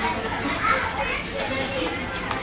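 Young children's voices and chatter in a busy fast-food restaurant, with a high child's voice rising and falling about half a second in.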